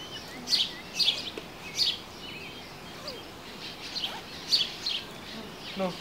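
A songbird chirping: short, high chirps repeated about every half second, with a pause of a couple of seconds in the middle.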